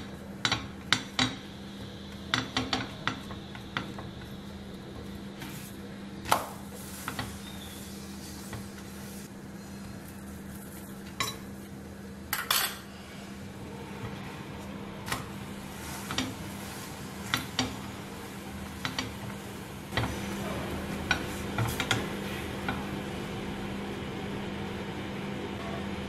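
A spatula tapping and scraping against a nonstick frying pan at irregular intervals as a paratha is pressed and turned, over a steady low hum.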